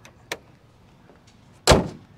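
Minivan hood slammed shut: one heavy thump near the end, after a faint click about a third of a second in.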